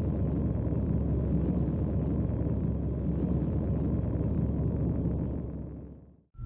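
Steady low rumble from an animated logo outro's sound effects, fading out over the last second.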